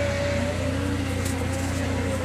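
A machine running with a steady low hum.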